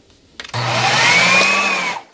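Ninja food processor motor running in one short burst of about a second and a half, blending thick peanut butter. It starts about half a second in with a whine that rises in pitch as the blade spins up, then cuts off just before the end.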